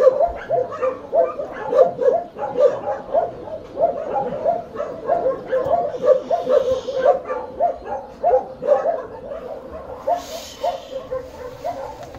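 A dog whimpering in a rapid string of short, high whines, about three a second.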